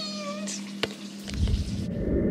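A cat meowing: one long call that rises in pitch and fades out about half a second in. A sharp click follows, then a low rumbling noise near the end.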